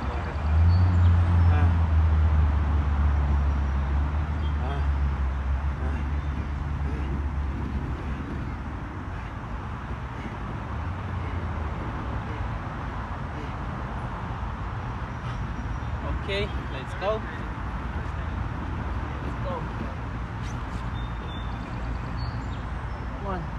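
A low engine rumble swells about half a second in and fades away over the next ten seconds, over steady outdoor background noise.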